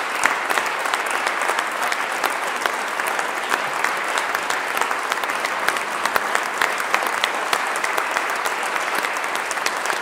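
Audience applauding, a steady dense mass of many individual claps with no letup.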